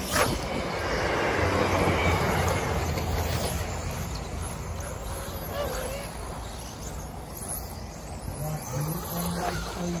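Vintage 1/10-scale electric 4WD off-road RC buggies racing, one passing close in the first few seconds with a rushing swell of motor and tyre noise that fades back; a sharp knock right at the start.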